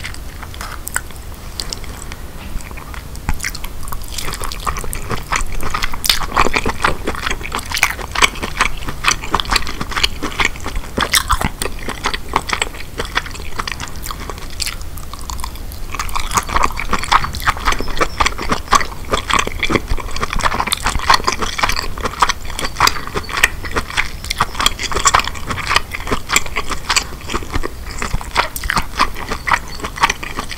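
Close-miked chewing of king crab meat: a steady run of small clicks that thickens after the first few seconds and eases briefly about halfway through.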